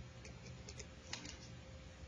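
A felt-tip marker shading a small box on a paper worksheet: a few faint short taps and scratches of the tip on the paper, the strongest about a second in, over a steady faint hum.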